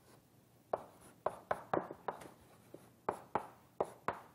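Chalk writing on a blackboard: about ten sharp, irregularly spaced taps and short strokes as the chalk hits and drags across the slate. They start a little under a second in.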